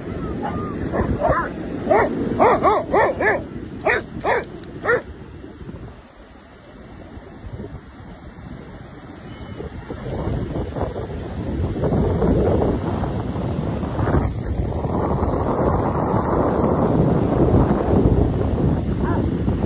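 Dogs barking: about ten short, sharp barks in quick succession over the first five seconds. A steady rush of wind on the microphone and surf builds from about ten seconds in.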